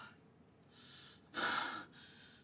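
A woman's loud, breathy gasp, about half a second long, about a second and a half in, just after a violent sneeze; before it, only faint breathing.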